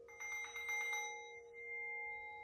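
A singing bowl's low tone rings on steadily while, just after the start, a smaller, higher-pitched metal bowl is struck, with a quick pulsing shimmer for about a second before its high tones ring on and slowly fade.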